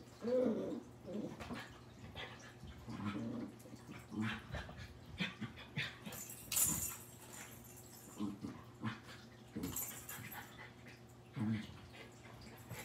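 A Scottish terrier puppy and a West Highland white terrier at play, making a handful of short, quiet dog noises spread through, with a couple of brief scuffling rustles.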